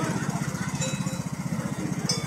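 A small engine running steadily, with a rapid, even chugging pulse, and faint voices over it.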